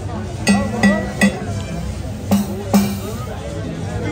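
A pair of stand-mounted drums struck in two short groups, three hits and then two more, each hit ringing briefly. Crowd chatter runs underneath.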